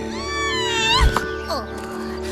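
A cartoon squirrel's high-pitched squealing call that rises and then bends down, followed by a shorter falling squeak, with a thump about a second in. Steady background music plays underneath.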